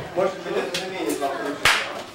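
Guests' conversation in a room, with a single sharp smack about one and a half seconds in.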